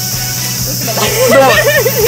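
A steady hiss, then a person's voice rising and falling from about a second in.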